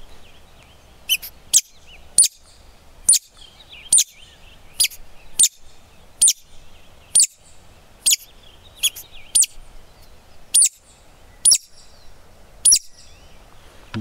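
A hand-held woodcock lure sounded in a series of about fifteen sharp, high chirps, each sweeping downward, roughly one every three-quarters of a second, imitating the woodcock's call to draw the bird in.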